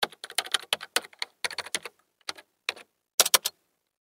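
Computer keyboard typing: quick, irregular key clicks, a flurry over the first two seconds, then a few single keystrokes and a short burst of clicks near the end.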